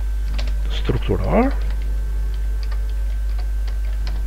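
Computer keyboard typing: an irregular run of single key clicks as a word is typed, with a short vocal sound about a second in. A steady low hum lies under it.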